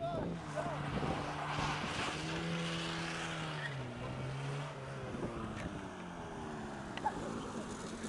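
A 1990 Ford Pony driving up the street toward the listener, its engine note rising a little, then falling in pitch from about four seconds in as it slows, over road and tyre noise.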